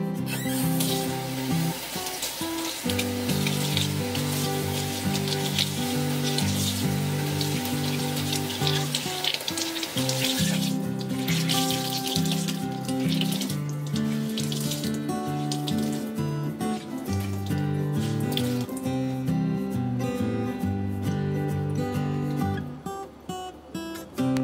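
Tap water running into a stainless steel kitchen sink while a cloth is soaked and wrung out under it; the water stops a little before the end. Background music plays throughout.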